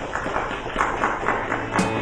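Guitar music with a fast, even rhythm of strums; held plucked notes come in near the end.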